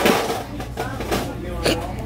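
Quiet, indistinct speech with a few small clicks.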